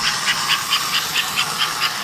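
American Flyer 302 toy steam locomotive running around its track, giving a fast, even train of hissing chuffs, about six a second, over a faint running hum.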